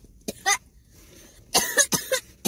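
A woman coughing a couple of times near the end, with a mouthful of burrito.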